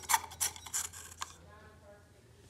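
Fingers rubbing and knocking against the frosted glass shade of a ceiling fan's light kit: a handful of short scraping clicks in the first second or so, then quieter.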